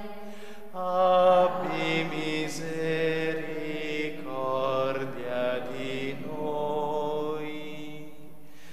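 Slow vocal chant: a singing voice holding long notes that step up and down in pitch, with no break.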